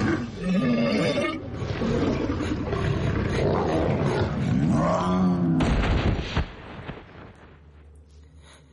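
A loud animal-like roar with a wavering pitch, ending in a brief deep rumble about six seconds in.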